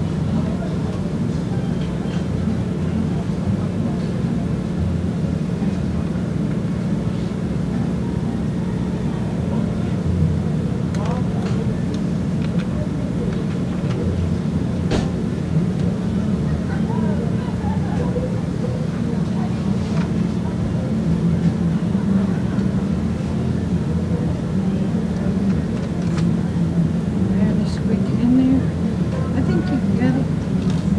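Steady low hum of running machinery, with muffled voices in the background and a few light clicks.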